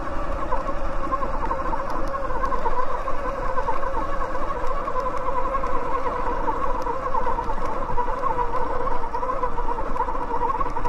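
Electric bike motor whining steadily under load on an uphill climb, its pitch wavering slightly, over a low rumble from the tyres and ride.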